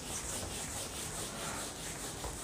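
Whiteboard being wiped clean of marker writing: a steady rubbing across the board surface in repeated back-and-forth strokes.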